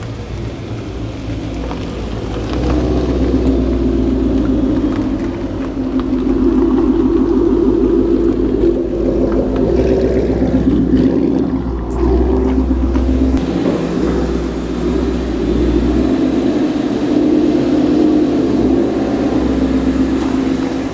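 2016 Ford Mustang with a Corsa Extreme exhaust, its engine running at idle and low revs, a steady exhaust rumble that swells a few seconds in and varies slightly as the car creeps into the garage.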